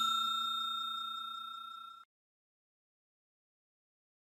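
The ringing tail of a bell-like notification ding, several bright pitches fading steadily and cut off suddenly about two seconds in.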